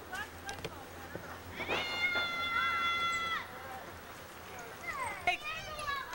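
A single high-pitched, drawn-out cry lasting nearly two seconds, held at one steady pitch, starting about two seconds in; short bits of voice follow near the end.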